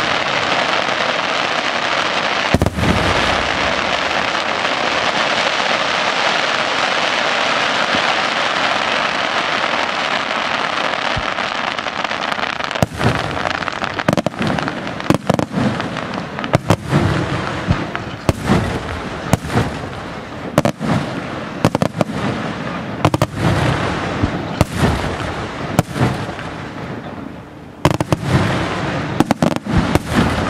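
Aerial fireworks display. For the first dozen seconds there is a dense, continuous crackle from glittering stars, with one bang near the start. Then comes a run of sharp shell bursts, about one or two a second, over lingering crackle.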